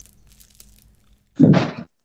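A short, loud thump about one and a half seconds in, after faint hum and crackle from an open voice-chat microphone.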